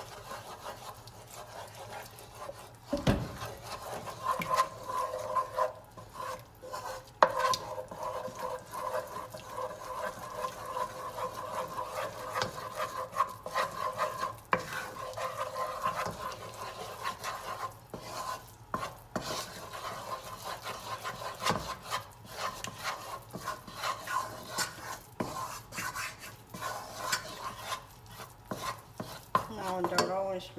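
Wooden spoon stirring and scraping a thick roux-and-milk paste around a nonstick saucepan, in many short scrapes, over a steady hum. A single knock sounds about three seconds in.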